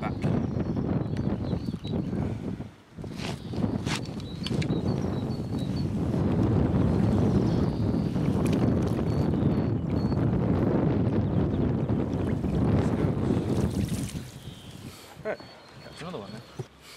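Wind buffeting the camera microphone: a loud, low rumble that eases off about two seconds before the end, broken by a few sharp knocks.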